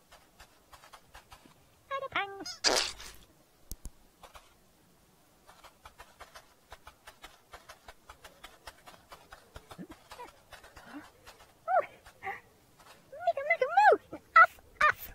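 Rapid light clicking and rattling of a children's-show toy cart, the Ogpog, as it is handled and pushed, with short squeaky babbling calls from a puppet character about two seconds in and again near the end, and one sharp bright squeak just after the first call.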